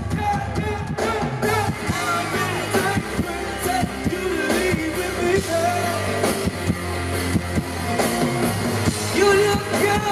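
Live band music with a man singing over electric bass and a steady beat.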